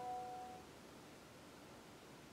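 The ringing tail of a chime, a few steady tones fading out about half a second in, then near silence: room tone.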